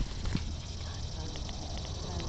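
Handling noise from a handheld phone being moved: two knocks in the first half second, then a few faint ticks, over a steady low rumble.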